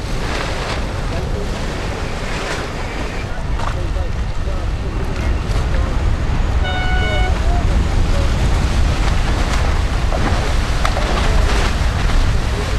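Wind buffeting the microphone and water rushing and slapping along a racing yacht's hull under sail, growing louder about halfway through. About seven seconds in there is a short steady beep.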